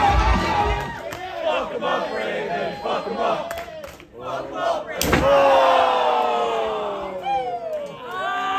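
Crowd shouting at a live wrestling show, with entrance music fading out in the first second. About five seconds in, one loud sharp crack as a stick is swung down onto a wrestler, followed by a long yell falling in pitch and more shouting.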